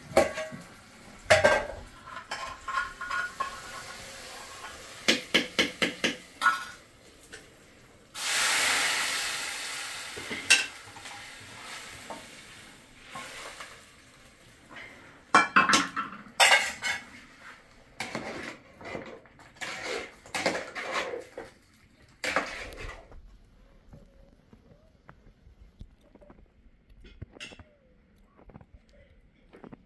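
Metal cookware clattering and scraping: pans, a pot and a spoon being handled and stirred over a wood cooking fire, in many short knocks and clinks. About eight seconds in comes a burst of sizzling that dies away over a couple of seconds.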